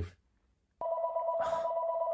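A phone ringing: a steady two-tone ring starts about a second in and holds, with a short burst of noise partway through.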